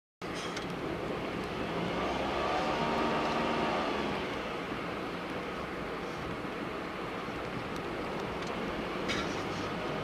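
Steady road and engine noise inside a moving car's cabin, cutting in abruptly from silence. An engine tone swells about two seconds in and fades by about four seconds.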